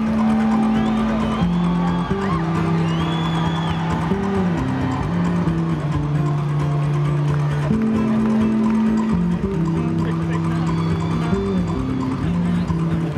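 Rock band playing live in an instrumental passage, heard from among the audience. Low sustained notes shift pitch every second or two over drums and guitars, with no singing.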